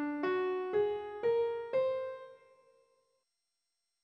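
Piano playing the Aeraptimic scale (scale 1351) upward, one note about every half second. The D held over from before is followed by F sharp, A flat, B flat and the top C, which rings out and fades away about two and a half seconds in.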